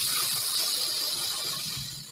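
Aerosol can of cheap black spray paint spraying in one continuous hiss of about two seconds, fading slightly near the end, as paint is sprayed onto wooden wand handles.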